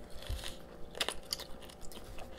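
Chewing and small eating noises close to the microphone, with a single sharp click about a second in.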